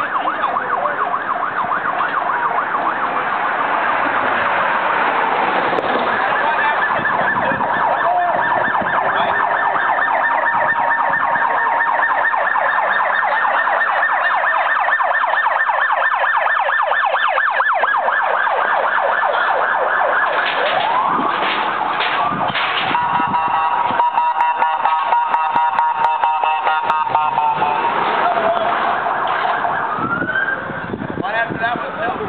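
Police car sirens: a fast warbling yelp for most of the time, then, about twenty seconds in, a rising wail followed by a rapidly pulsing tone, with another rising sweep near the end.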